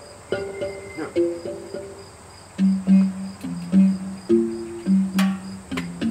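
Live instrumental accompaniment: a pitched instrument plays a melody of short notes that step up and down, then drop lower about two and a half seconds in. There are a couple of sharp taps about five seconds in, and crickets chirp steadily behind.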